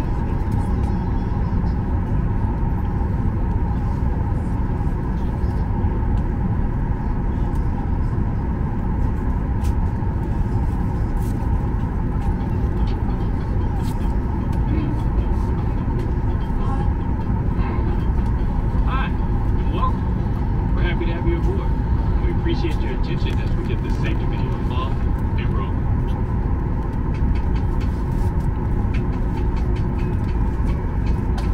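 Steady cabin rumble of a Boeing 737 MAX 8 taxiing, its CFM LEAP-1B engines and air system running, heard from a window seat inside the cabin. Faint, unclear voices come through in the middle.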